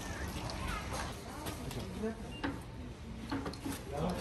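Background chatter of people talking nearby, quieter than the main voice, with a few light clicks and knocks.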